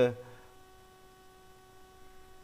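A drawn-out spoken "a" trails off in the first half-second, leaving a faint steady electrical hum of several even tones from the recording setup.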